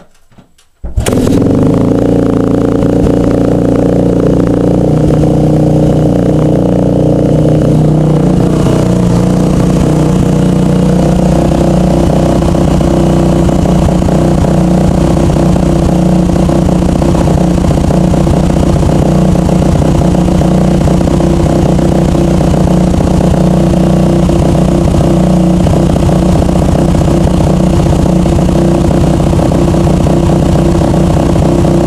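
2001 Yamaha YZ250F's four-stroke single-cylinder engine kick-started from cold, firing up about a second in and then idling steadily and loudly; the idle note shifts slightly about eight seconds in.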